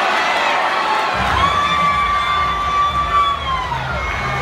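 Hockey arena crowd noise. About a second in, a long, held siren-like tone starts over a deep beat from the arena's sound system, and the tone falls away near the end.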